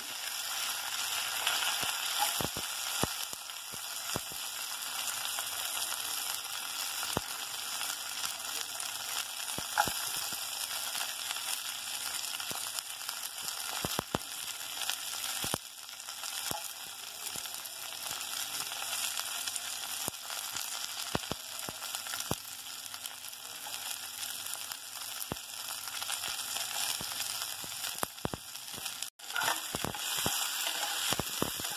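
Shallots, curry leaves and dried red chillies frying in hot oil in a pot: a steady sizzle with scattered pops and crackles. The sound cuts out for a moment near the end.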